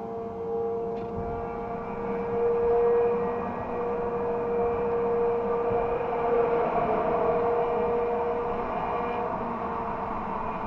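Motorcycle engine running at a steady cruising speed in traffic, a sustained even note with road and traffic noise beneath it. It grows louder for a few seconds in the middle, as the sound is enclosed under an overpass.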